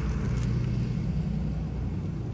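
A steady low engine rumble with a faint hum, like a motor vehicle running nearby.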